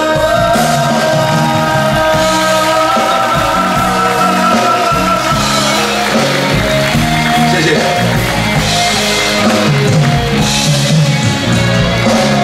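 Live band music with singing: a Taiwanese Hokkien pop ballad played on stage, with long held notes over a steady beat.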